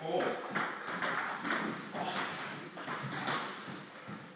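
Table tennis ball making a string of sharp clicks as it is hit and bounces, with faint voices behind.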